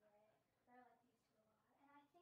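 Very faint, quiet speech from a girl, barely above near silence.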